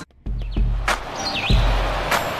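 TV station break bumper: a brief drop to silence, then production music with deep bass booms and whooshing hits, laced with short high chirping sweeps.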